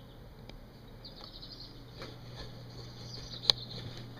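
Faint handling noises over a steady low hum, with one sharp click about three and a half seconds in.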